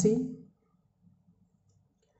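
A voice finishing a word in the first half second, then near silence.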